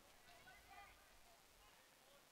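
Near silence, with faint distant voices about half a second in.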